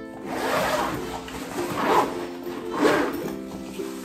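The zipper of a padded nylon ukulele gig bag being pulled open in a few quick strokes, over steady background music.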